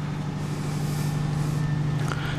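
Steady low machinery hum aboard a yacht, a constant deep tone with a soft hiss over it.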